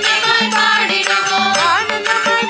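Carnatic-style devotional bhajan: a young female voice sings with sliding ornaments over a steady drone note, accompanied by violin and mridangam strokes.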